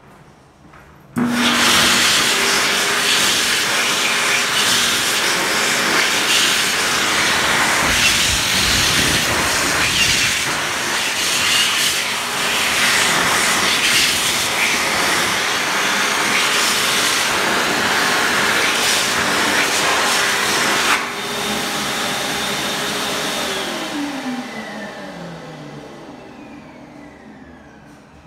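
KINGWE JetDry KW-1036 hand dryer switching on suddenly about a second in and blowing a loud, steady rush of air over hands for about twenty seconds. Around twenty-one seconds it drops a step in level, then the motor winds down with a falling whine until it fades near the end.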